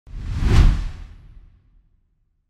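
A whoosh sound effect with a deep low boom, swelling to a peak about half a second in and fading away by about a second and a half. It is the swoosh of a TV programme's animated title reveal.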